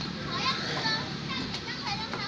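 Young children's high-pitched voices calling out in short bursts while they play on a slide, over a steady low background murmur.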